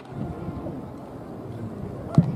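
Steady low outdoor rumble with wind on the microphone and faint wavering background voices.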